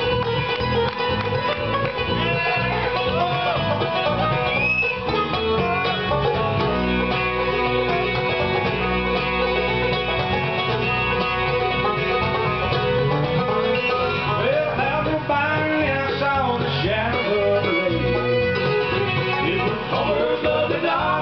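Live bluegrass band playing an instrumental break on banjo, acoustic guitar, mandolin, fiddle and bass, with no singing.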